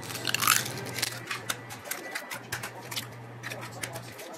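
Eggs being cracked one after another into a bowl of dry cake mix: a run of small shell taps and cracks, with a low steady hum underneath.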